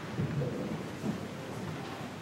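A congregation getting down to kneel in church pews: a low rumble of shuffling and moving bodies, with a couple of soft thumps.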